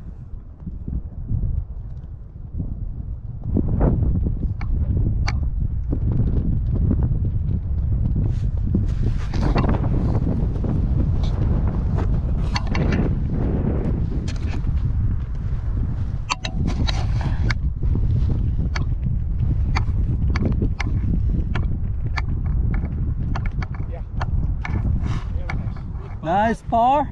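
Wind buffeting an action camera's microphone: a steady low rumble that sets in a few seconds in, with scattered sharp clicks and ticks over it.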